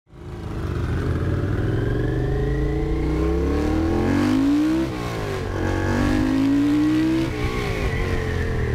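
Honda CX650 cafe racer's V-twin with peashooter exhausts accelerating: the revs climb for about four seconds, drop at an upshift, climb again, then fall once more near the end.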